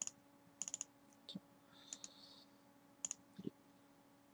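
Faint computer mouse clicks, a few single and several in quick double-click runs, over a faint steady electrical hum.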